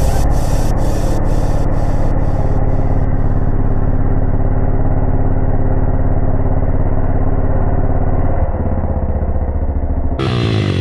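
A 140 cc single-cylinder pit bike engine idling steadily with an even, rapid firing beat. The note drops slightly about eight and a half seconds in.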